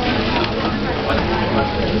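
Several people talking over a steady rush of storm wind and blowing debris from an extratropical cyclone, heard from indoors behind glass.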